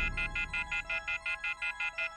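Telephone off-hook warning tone: a high multi-tone beeping, pulsing several times a second, from a handset left hanging by its cord. A dark, low musical drone fades away beneath it.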